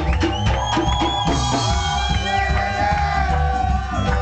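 Live reggae band playing, with drums and a heavy bass line. A high, thin held tone slides up and down over the band in the first half.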